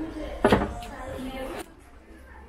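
A drawer of a white display cabinet being handled, with one sharp knock about half a second in.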